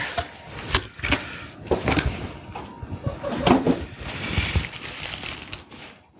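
Packaging being handled: a cardboard box rummaged through, with bubble wrap and a plastic bag crinkling and rustling in irregular clicks and crackles.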